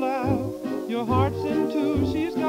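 A 1929 dance-orchestra fox trot played from a Columbia 78 rpm record: a wavering melody line with strong vibrato over a regular, bouncing bass.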